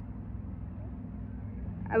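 A steady low mechanical hum, like a running motor or engine, with a person's voice starting near the end.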